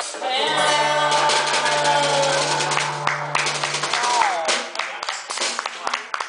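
A woman sings the final held note of a song over an acoustic guitar, her voice sliding down in pitch about four seconds in. Scattered clapping from a small audience follows as the song ends.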